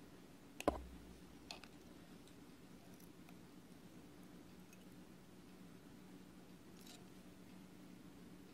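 A few faint metallic clicks of tweezers pinching hot 24-gauge kanthal coils on a rebuildable atomizer deck, over a low steady hum. A sharper knock comes about a second in.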